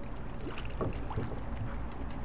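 Pool water lapping and splashing around small dogs moving on a floating mat, over a steady low rumble.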